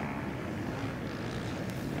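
Distant motocross bikes running on the track, heard as a steady engine noise.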